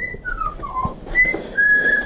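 Parrot whistling a string of five short, clear notes: a high note, two falling slides, then two held notes, the last the longest.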